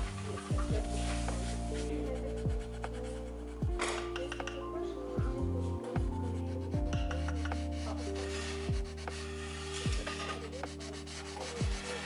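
A metal blade scraping and rubbing dried glaze off a ceramic tile, taking the top layer off some parts so the glaze beneath will fire brown. Lo-fi background music with a slow beat plays underneath.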